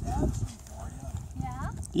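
Footsteps on a paved walkway, a run of irregular low thumps that fades about half a second in.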